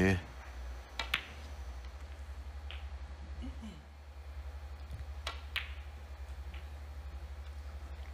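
Snooker balls clicking as shots are played: a sharp pair of clicks about a second in and another pair about five seconds in, the cue striking the cue ball and the cue ball hitting an object ball, with fainter knocks between. A low steady hum lies underneath.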